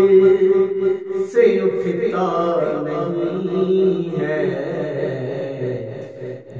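A man singing a hamd, a devotional poem praising God, in long held notes with gliding, ornamented turns; a new phrase begins about a second and a half in.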